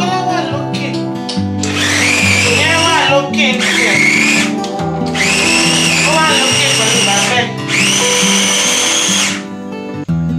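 Electric mini food chopper whirring in about four pulses of one to two seconds each, its motor giving a steady high whine while it is pressed on top. Background music plays underneath.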